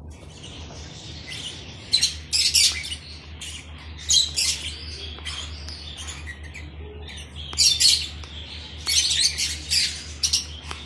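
Lovebirds chattering: shrill, high-pitched squawking calls come in bursts, loudest about two, four, eight and nine seconds in, over a steady low hum.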